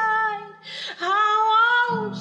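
A woman singing a slow melody on the soundtrack, holding two long notes with a short breath between them; a low sustained backing chord swells in again right at the end.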